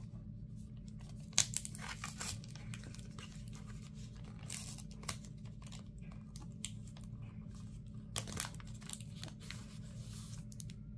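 Paper handling: a sticky note being peeled off its pad and smoothed onto a planner page, as a run of short rustles and crackles with a few sharper ones, the strongest about a second and a half in and again near the end.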